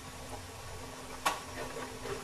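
A metal ladle clinks once, sharply, against a pan of fish curry about a second in, over a faint steady low hum.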